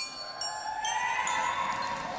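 Glockenspiel notes ringing on, joined by a crowd of high voices shouting together that rises in pitch and swells through the middle before fading near the end.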